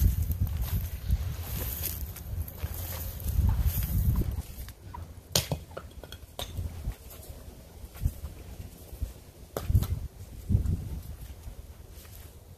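Wind buffeting the microphone in gusts, easing off about four seconds in, then a few scattered sharp knocks and clicks.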